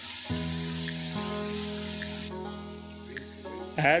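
Onion-and-tomato masala paste sizzling in hot oil in a frying pan, a steady hiss that cuts off abruptly a little past halfway. Background music with sustained chords plays throughout.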